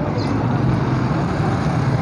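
Steady low rumble of road traffic, with no distinct events standing out.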